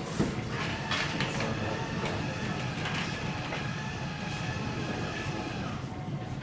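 Electric motor of a retracting projector screen running as the screen rolls up: a click just after the start, then a steady whine that dies away near the end.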